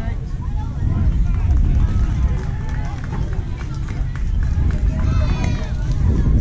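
Indistinct voices of spectators and players calling out and chatting at the ball field, over a steady low rumble, with a louder call about five seconds in.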